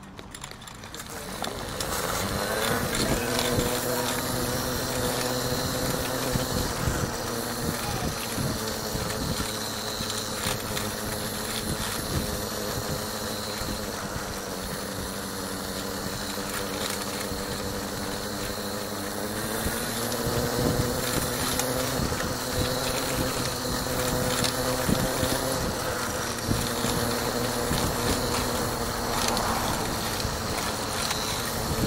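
A motor vehicle's engine running steadily, its pitch stepping up about two seconds in and again about twenty seconds in.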